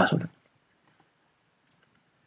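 A man's word trailing off, then near silence with two faint computer-mouse clicks a split second apart, about a second in.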